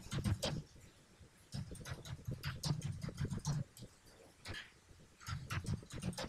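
Computer keyboard being typed on: quick runs of key clicks, pausing for about a second near the start and again around four seconds in.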